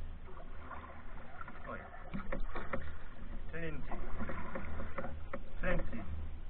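Canoe coming in to shore under paddle, with scattered sharp knocks and clicks of paddle and gear against the hull and a steady low rumble. A voice is heard briefly about halfway through and again near the end.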